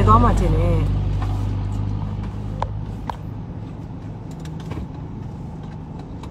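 Low steady hum of a car engine running, heard inside the cabin. It is loudest at the start and eases off over the first couple of seconds, with a few faint clicks later on.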